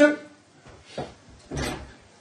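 A pause in a man's talk: the end of a word, a faint click about a second in, and a short rustle of movement near the end.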